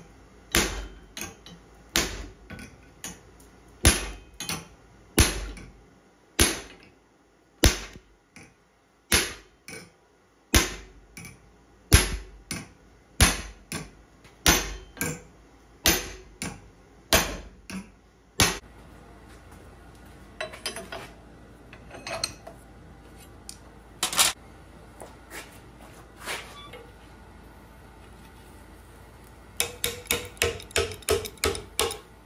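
Hand hammer striking a handled top tool on a piece of steel angle at the anvil, each blow a sharp metallic ring, about two a second at first and then about one a second. Past the middle the blows stop, leaving scattered light taps and one more loud strike.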